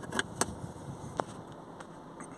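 A few short, faint clicks of a USB flash drive being handled and pushed into the car's USB port, over low steady cabin noise.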